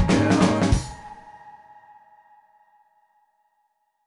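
The end of an indie pop-rock song: the full band, drums included, plays its last beat and stops abruptly under a second in. A held note rings on and fades away over the next two seconds.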